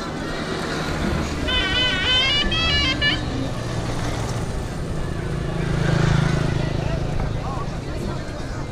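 Busy outdoor square ambience: people talking, a short high wavering melody between about one and a half and three seconds in, and a motor vehicle's engine swelling to its loudest about six seconds in before fading.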